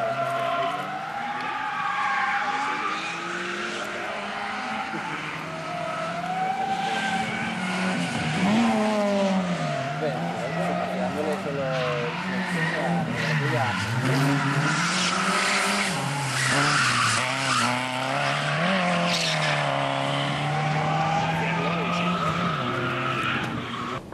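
Car engines on a race circuit, the engine note repeatedly dropping and climbing again as the cars brake and accelerate, with tyre noise and people talking.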